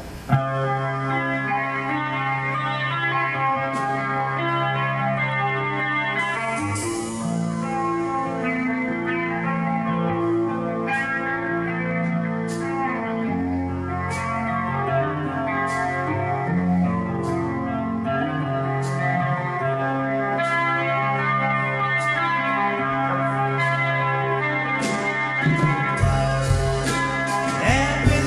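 Live rock band playing an instrumental song intro: electric guitars ringing out slow sustained chords over bass guitar, with light percussion strokes about once a second. Heavier drums come in near the end.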